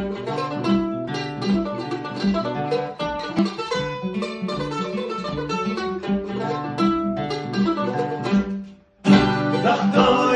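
Live acoustic guitar with a second plucked string instrument playing a song's instrumental intro in a rhythmic run of picked notes. The playing stops briefly just before the end, then comes back louder.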